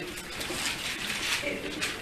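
Paper rustling as thin Bible pages are flipped to find a passage, with soft low murmuring voices in a small room.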